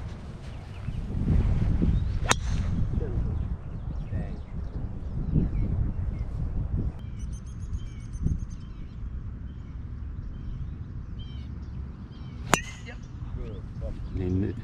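Two golf drives off the tee, each a single sharp crack of a driver striking the ball: one about two seconds in and a second near the end. Wind rumbles on the microphone throughout, and a bird chirps briefly about halfway through.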